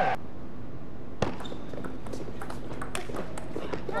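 Table tennis ball clicking off bats and table: one sharp knock about a second in, then a run of lighter, quick ticks near the end.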